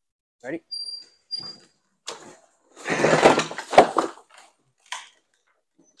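Two men straining and grunting as they lift a stripped vehicle chassis and tip it up on end, with metal creaking and scraping and a sharp knock as the frame comes down on its end about four seconds in.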